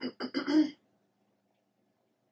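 A woman clearing her throat: three quick rasps in under a second, the last the loudest.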